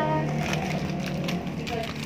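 Plastic Oreo biscuit wrapper crinkling faintly in irregular little crackles as it is picked up and handled, over a low steady hum.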